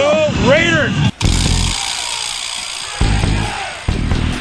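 Drawn-out, rising-and-falling shouting voice over loud, distorted rock music, with an abrupt edit cut just after a second in into a noisier stretch of the music.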